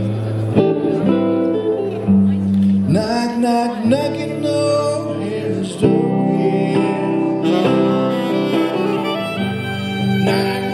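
Live music from a guitar-and-saxophone duo: a slow song on electric guitar with long held melody notes, and a man singing.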